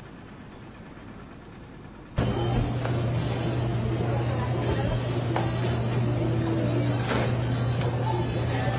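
Electric tortilla machine running with a loud, steady low hum, with a few light knocks; the hum starts suddenly about two seconds in.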